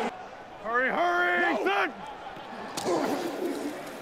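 A man's voice giving one drawn-out shout, rising and then held for about a second, over a steady background haze, with fainter voices about three seconds in.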